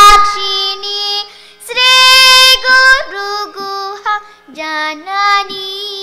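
A young girl singing Carnatic classical music solo: long held vowel notes with gliding ornaments, in phrases broken by brief pauses. The loudest note is at the very start and slides down in pitch.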